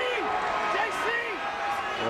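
Basketball arena crowd noise: many voices from the stands and benches shouting and talking at once, with a few short sharp knocks.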